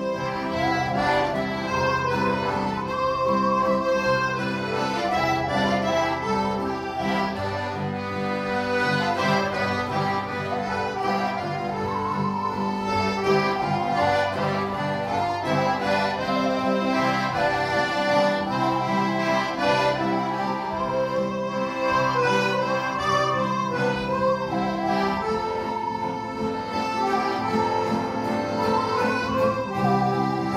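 Button accordions playing a tune together, a sustained melody over steady low bass and chord notes.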